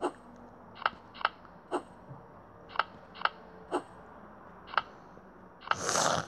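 Tile-flip sounds of a tablet memory-matching game: about eight short, sharp clicks at uneven intervals as stone-looking tiles are tapped. Right at the end comes a brief, louder rush of noise as two tiles turn over to show a matching pair.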